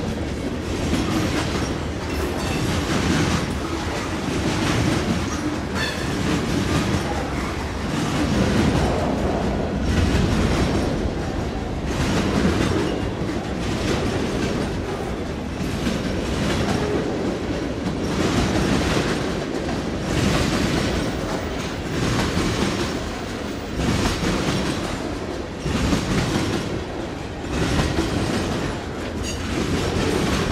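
Freight cars of a mixed manifest train rolling past close by: steady wheel-on-rail rumble with a repeating clickety-clack as the wheels cross rail joints, swelling and easing every second or two as the cars go by.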